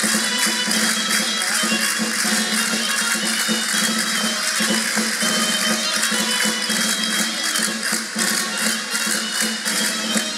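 Live folk band playing a Castilian jota: a high held melody over a quick, steady percussion beat.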